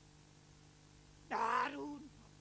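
A man's voice through a PA: one short drawn-out vocal sound, rising in pitch and then held, starting about a second and a half in, over faint room tone and hum.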